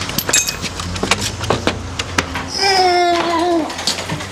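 Clicks and knocks as a door latch is worked through a broken glass pane and the door is pushed open. Then comes one long muffled moan from a gagged man lying on the floor, falling slightly in pitch at the end.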